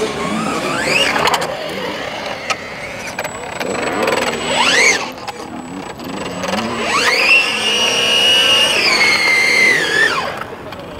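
Electric motor of a nitro-to-electric converted RC Formula One car whining as it is throttled: two short whines rising in pitch in the first half, then a long high whine held for about three seconds near the end that drops away as the throttle is released. The car is on tyres with little grip and keeps sliding.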